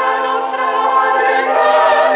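A choir singing sustained chords over a steady held low note.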